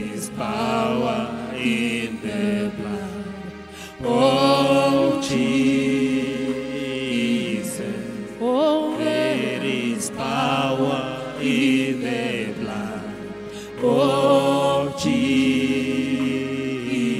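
A man singing a gospel song into a microphone in long, held phrases that glide between notes.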